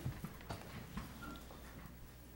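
A few soft knocks about half a second apart, with faint shuffling, as people get up from their chairs, over a low steady hum.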